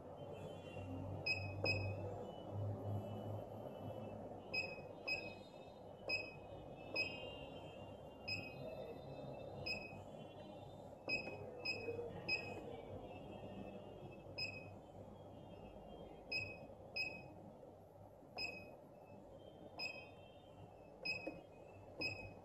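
Balaji BBP billing machine's keypad beeping: about two dozen short, high beeps, one for each key press, coming singly and in quick runs of two or three as a product name is typed letter by letter on the multi-letter keys.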